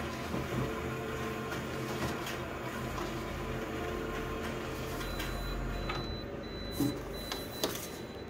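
Office multifunction printer running a print job, a steady mechanical whirring of its rollers as a sheet feeds out into the output tray. A faint high whine joins in the second half, and a couple of sharp clicks come near the end.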